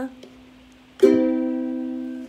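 Ukulele: after a brief lull, a single chord is strummed about a second in and left to ring, slowly fading, as the closing chord of the song.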